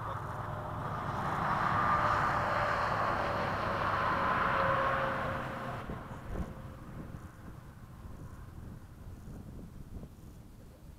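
A 70mm electric ducted-fan RC F-16 jet making a pass: the fan's rush and whine swell over about two seconds, hold, then fade away after about six seconds, the whine dropping slightly in pitch as it goes by.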